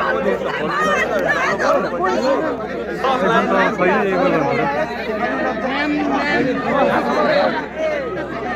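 Several voices talking at once, a steady overlapping chatter with no music.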